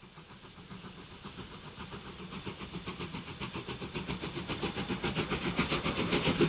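JNR Class C11 steam tank locomotive working with a quick, steady chuffing beat, growing steadily louder as it approaches.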